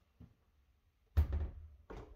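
Two dull thunks, the first loud and deep, the second softer about 0.7 seconds later, with a faint click before them.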